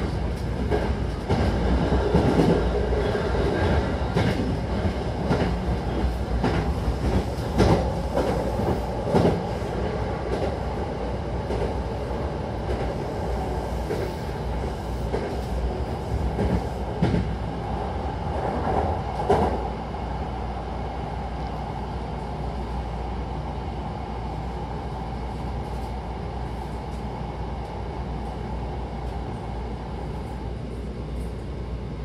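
Hankyu commuter train running, heard from inside the car: a steady rumble of wheels and running gear with sharp clacks over the rail joints, thick in the first twenty seconds, then smoother running noise.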